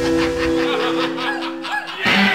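Live band playing. Under a fading held note, the bass drops out, and a lead instrument plays a run of short, squawky bent notes that rise and fall in pitch. The full band comes back in right at the end.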